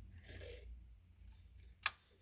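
A small plastic plant pot being set back down on a grid shelf: a soft rustle, then one sharp click as it touches down near the end.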